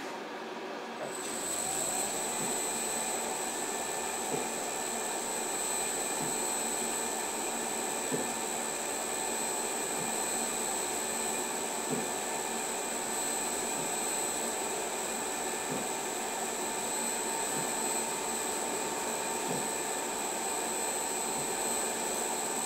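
Mirror-o-Matic 8 mirror-polishing machine running steadily, its motor giving a thin high whine, with a soft knock about every two seconds in time with the 32 RPM eccentric that strokes the tool over the glass mirror. The sound comes up about a second in.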